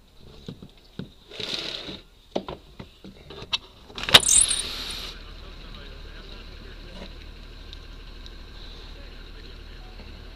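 Handling noise from a body camera held against a window screen: a string of clicks and rustles, the loudest burst about four seconds in, then a steady low hum.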